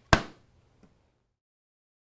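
Bean hopper lid of a Gaggia Babila espresso machine closing with a single sharp clack, followed by a faint tick just under a second in.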